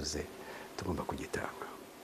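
A man's voice speaking softly, in short, quiet murmured phrases.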